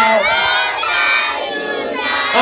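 A crowd of children singing and shouting together in a birthday song, many voices at once and loud.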